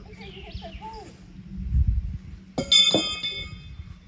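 A thrown horseshoe strikes the metal stake about two and a half seconds in, with a sharp clang and a bright ringing that lasts about a second, followed by a second dull knock.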